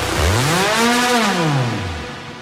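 In a melodic techno mix, a low electronic tone sweeps up in pitch for about a second and slides back down, over a hissing wash of noise, fading toward the end.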